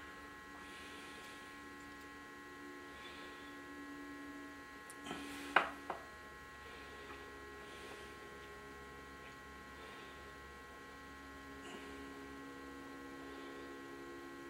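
Faint steady electrical mains hum, with a few sharp small clicks about five and a half seconds in as a micrometer is worked on a valve stem.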